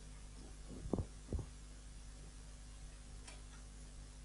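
A steady low hum with two soft thumps about a second in and a faint click later: handling noise from a headset microphone being adjusted at the ears.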